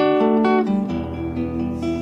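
Acoustic guitar playing slow plucked notes and chords. The notes change a few times and ring on in between.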